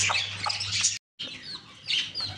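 Small caged birds chirping in short, high calls, broken by a sudden moment of dead silence about halfway through. A faint steady low hum sits underneath.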